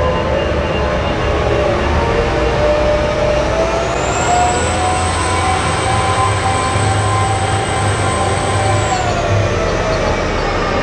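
Large mining haul trucks running, a steady engine note with a high whine over it; about four seconds in the pitch rises and holds, then falls back shortly before the end.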